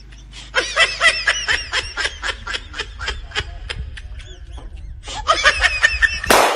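High-pitched laughter in quick repeated pulses, several a second, starting about half a second in, easing off briefly near 5 s and picking up again at the end.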